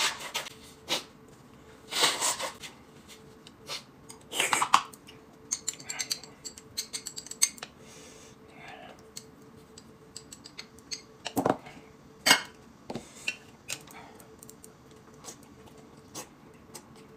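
Spoon and chopsticks clinking and scraping on small ceramic dishes while chili sauce is spooned onto a plate of dumplings: a dense run of light clinks in the middle, then a couple of sharper knocks. Near the start there are two short rushes of noise.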